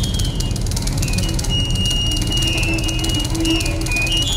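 Live contemporary chamber ensemble of flute, harp, cello and piano playing a dense passage: a steady low rumble under thin, high held tones that squeal.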